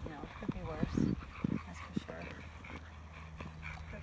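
A dog whimpering and yipping, ending in a run of short, high cries.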